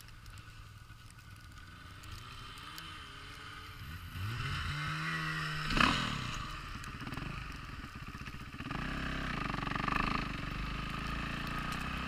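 Dirt-bike engine of a Timbersled snow bike running at low revs, then revving with rising pitch about four seconds in, loudest just before six seconds, and pulling steadily at higher revs from about nine seconds.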